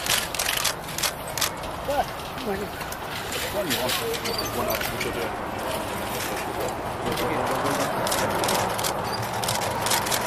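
Indistinct chatter of several people, faint and broken, over steady background noise, with scattered sharp clicks that are densest near the start.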